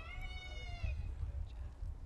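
A high-pitched cheer from the crowd, one held "woo" that sags slightly in pitch and cuts off just under a second in.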